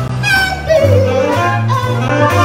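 A young girl sings a jazz vocal line into a microphone, with a wavering held note about a second in. A live jazz band accompanies her, with upright bass notes moving underneath.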